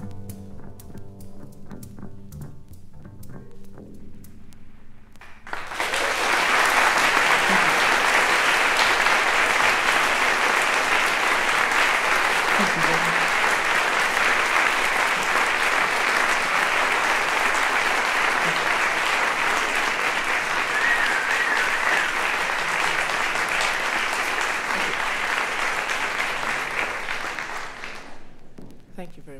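The last notes of a live band number ring out and fade, then a live audience breaks into applause about five and a half seconds in and keeps applauding steadily for some twenty seconds, dying down just before the end.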